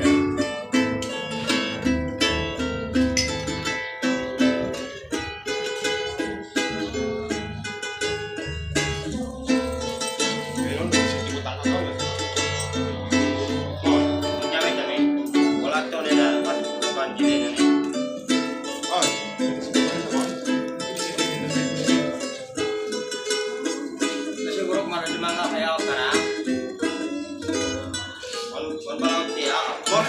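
A ukulele and a small acoustic guitar playing together, plucked and strummed in a steady, continuous accompaniment. The low bass notes fall away about halfway through.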